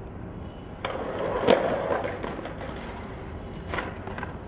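Skateboard wheels rolling on concrete, with one sharp, loud clack of the board about a second and a half in and a smaller knock near the end.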